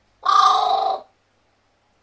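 A pet carrion crow gives one loud caw lasting a bit under a second, about a quarter of a second in.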